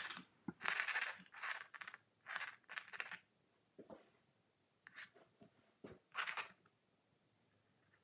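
Edge of a painting spatula scraping lines through wet acrylic paint on canvas: a run of short, separate scrapes, bunched in the first three seconds with a couple more later.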